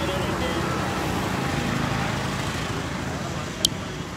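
Steady street traffic noise, with faint voices in the background and a sharp click near the end.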